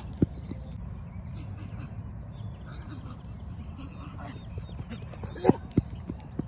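Outdoor ambience: a steady low rumble, with a sharp click just after the start and two short sharp sounds with falling pitch about five and a half seconds in.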